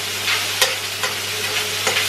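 Stir-fried vegetables sizzling in a very hot, oiled frying pan. A spoon stirring them scrapes and clicks against the pan a few times.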